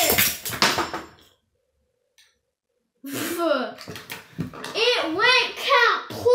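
A Beyblade launch: a burst of sharp clicks and clatter as the spinning top is ripped from its launcher and hits the wooden table, dying away after about a second. After a short quiet gap, a child makes long wordless vocal sounds that slide up and down in pitch.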